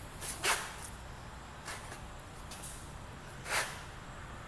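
Two short breath-like puffs close to the microphone, about three seconds apart, over a low steady background hum.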